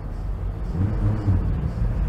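Low engine rumble of a heavy road vehicle, growing louder from about halfway through.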